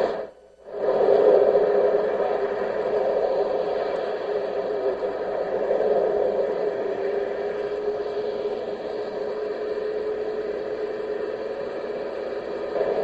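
Steady static hiss on the police dashcam's audio feed, with a faint steady hum in it. The sound cuts out for about half a second right at the start.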